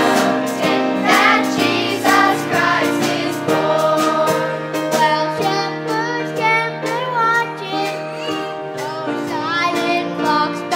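Children and teenagers singing a Christmas song together with instrumental accompaniment, sustained low notes held under the voices.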